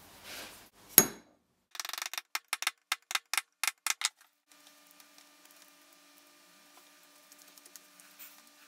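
Small metal parts of a Stanley Bailey No. 4 plane's frog being handled: one sharp metallic click about a second in, then a quick run of about a dozen light metal taps over two seconds. A faint steady hum follows.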